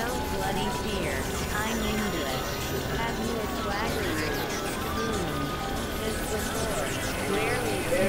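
Experimental electronic drone and noise music from synthesizers: a dense, steady, noisy bed with many short tones sliding up and down in pitch, and a garbled, voice-like layer mixed in.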